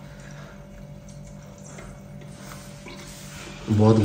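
Quiet kitchen room tone with a steady low hum and a few faint clicks. A woman's voice starts right at the end.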